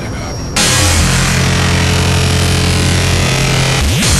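Speedcore electronic music. About half a second in it jumps louder into a dense wall of noise over held low bass notes, with a quick swoop in pitch near the end.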